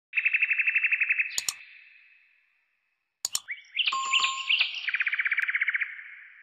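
Sound effects for a subscribe-and-bell animation. A high, rapid ringing trill like a notification bell rings for about a second. Two sharp clicks follow, then it fades to silence. After the pause come two more clicks, a few quick chirping tones, and a second bell trill that fades out.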